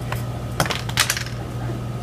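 Plastic cookie cutters clicking and clattering against each other and the wooden table as they are handled: a light click, then a cluster of clicks about half a second in and another about a second in.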